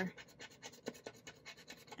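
Faint, quick scratching strokes, several a second, as a gold scratch-off circle on a paper savings-challenge card is rubbed off to reveal the number under it.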